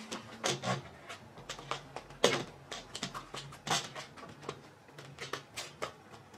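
Scissors snipping and crinkling at a stiff plastic blister pack, an irregular run of small clicks and crackles with a couple of sharper snaps. The plastic is hard to cut and the scissors are not getting through.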